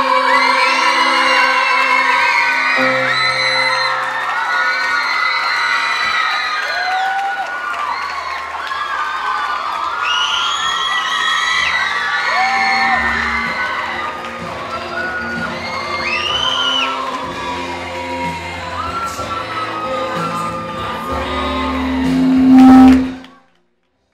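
A teenage boy holds a long final sung note over a backing track, then the audience cheers and whoops while the backing music plays on. The sound swells to its loudest just before cutting off suddenly near the end.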